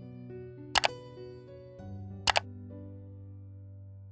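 Slow background music with sustained notes. About a second in, and again about a second and a half later, a sharp double-click sound effect from the subscribe-button animation cuts through the music.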